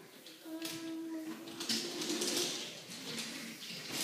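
A young child's voice making a long, drawn-out wordless sound, held on one pitch for about two seconds. Scuffing and rustling follow in the second half.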